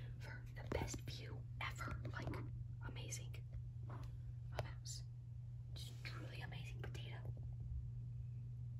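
A person whispering in short bursts over a steady low electrical hum.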